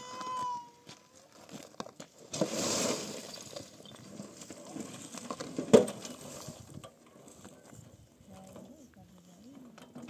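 Stones and earthen rubble tipped out of a metal wheelbarrow: a rattling rush of falling stones a little over two seconds in, then a single sharp knock just before six seconds, the loudest sound. A short high animal call, like a goat's bleat, opens the stretch.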